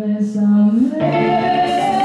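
Live band music: a woman singing over electric guitar and bass guitar, the chord changing about a second in and a long note held from there on.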